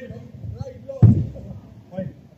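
A single loud, sharp thud of a football impact about a second in, with players' shouts from across the pitch around it.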